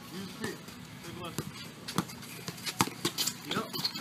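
A basketball bouncing on an outdoor asphalt court: a few sharp, unevenly spaced thuds, with players' voices faint in the background.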